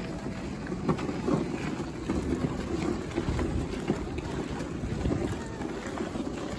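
Wind buffeting the microphone, a steady low rumble, with a few light knocks.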